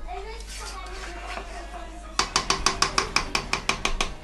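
A spoon-spatula stirring thick peanut-butter sauce in a saucepan. For the last couple of seconds it knocks against the side of the pot in a quick, even run of clicks, about seven a second.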